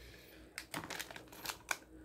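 A few faint crinkles and light ticks of a foil-lined plastic snack packet being handled and set down.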